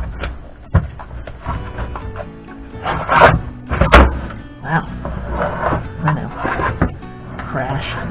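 Metal chassis of a vintage Panasonic RS-853 8-track player scraping and knocking as it is slid out of its wood-grain cabinet, with two loud rubs about three and four seconds in. Background music plays throughout.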